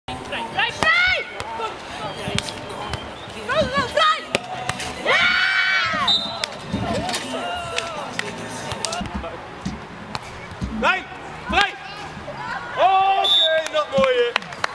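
Beach volleyball play: sharp slaps of hands striking the ball, mixed with players' loud shouted calls.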